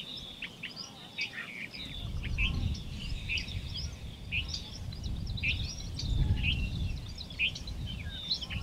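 Small birds chirping repeatedly with short, quick calls, over a low, uneven rumble of wind on the microphone that starts about two seconds in.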